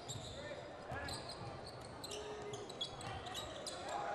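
Basketball game sounds in a gym: a basketball bouncing on the hardwood floor, sneakers squeaking in short high-pitched chirps, and a murmur of crowd voices.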